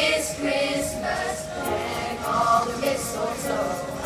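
Children's choir singing a Christmas song together, several voices holding notes and moving in pitch between phrases.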